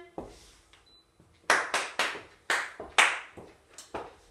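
Hand clapping in a rhythm: three quick claps, then two slower ones, then a couple of fainter knocks, an attention signal after "pay attention".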